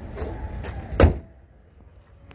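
A car hood slammed shut: one loud, sharp metal impact about a second in, with a little handling noise before it.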